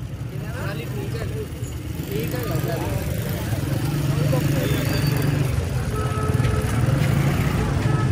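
Crowd of many people talking at once in the background of a busy livestock market, over a steady low rumble of motor traffic that swells slightly in the middle.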